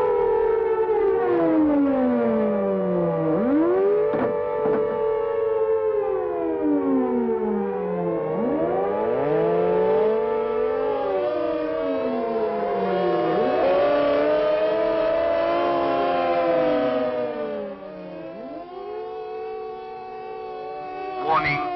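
Several civil defence air-raid sirens wailing together, each rising and falling in pitch out of step with the others: the British attack warning signal. The sound drops in level near the end.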